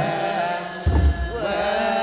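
Ethiopian Orthodox aqwaqwam liturgical chant: voices chanting a slow, wavering melody over a deep drum that strikes once, a little under a second in. A high, bright rattle sounds with the drum stroke.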